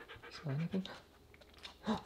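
Siberian husky sniffing and panting softly while searching out a scented packet.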